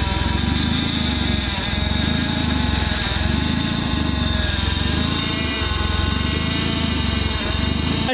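A car engine running loud and steady, cutting off abruptly at the very end.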